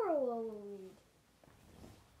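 A child's drawn-out wordless vocal sound, sliding down in pitch for about a second, then fading into faint room noise.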